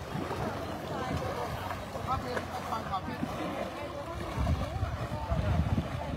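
Elephants wading and bathing in shallow muddy water: water churning and splashing around their legs and trunks, with wind rumbling on the microphone and faint voices in the background. The churning swells about two-thirds of the way through.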